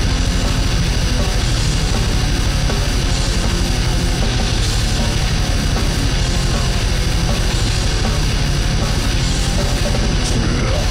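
Loud, fast grindcore music: heavily distorted guitars over rapid-fire drumming in a dense, unbroken wall of noise.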